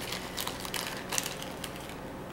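Soap sample's wrapping being worked open by hand: a run of irregular crinkling crackles, with a few sharper crackles about a second in.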